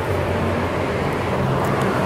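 Street traffic noise: a steady low rumble of motor vehicles running on the road alongside the sidewalk.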